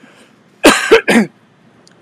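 A man coughing twice into his fist, two short loud coughs a little over half a second in.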